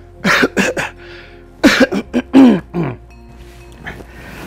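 A man laughing heartily in two bouts of short bursts, each bout ending in a falling laugh.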